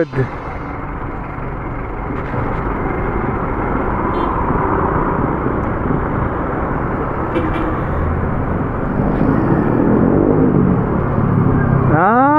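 A Honda ADV 150 scooter's single-cylinder engine running as it is ridden slowly in heavy traffic, under a steady rushing noise of the ride and the surrounding vehicles that gets slowly louder.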